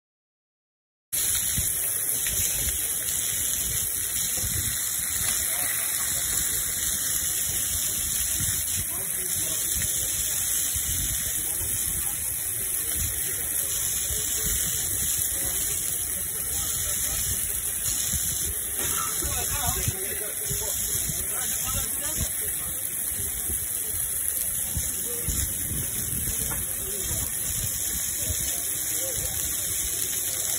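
Chicken pieces sizzling on a flat-top griddle: a steady hiss that starts about a second in.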